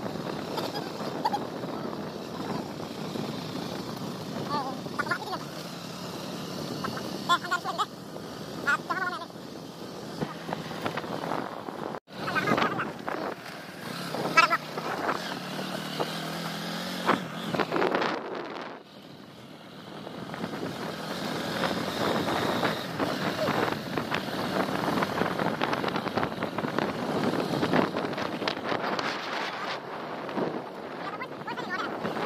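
Motorcycle engine running while riding, with wind rushing over the microphone and brief voices now and then. The sound drops out abruptly about twelve seconds in and changes again just before twenty seconds.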